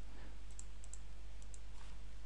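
A few faint computer-mouse clicks over a low, steady electrical hum.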